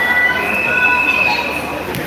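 A steady high-pitched squeal with several tones held together, lasting about a second and a half, over faint voices.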